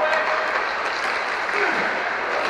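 Inline hockey game in play: a steady din of skate wheels rolling on the court, with players' shouts and a few faint stick clacks.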